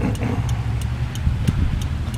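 A vehicle engine running steadily, heard as a low rumble, with faint, irregular ticks over it.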